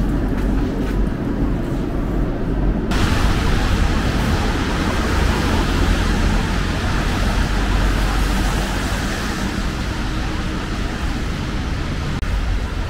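Steady city street traffic noise with a low rumble; about three seconds in it becomes brighter and more hissy, like car tyres on a wet road.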